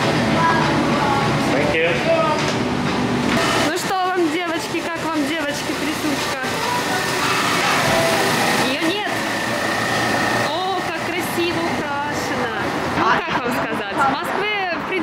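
Busy coffee-shop ambience: indistinct voices of customers and staff talking over a steady background din, with a few sharp clicks and knocks.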